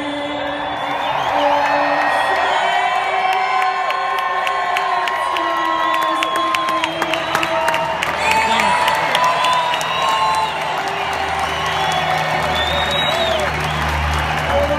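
A large stadium crowd cheering and applauding, with whoops and shrill whistles. A low engine drone from an aircraft overhead builds in the second half and is strongest near the end.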